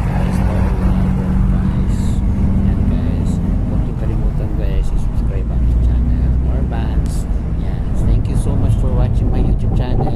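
Steady low rumble and hum of a car driving along a street, recorded from the moving vehicle, with indistinct voices talking over it.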